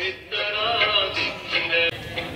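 A man singing a melodic line with held, wavering notes.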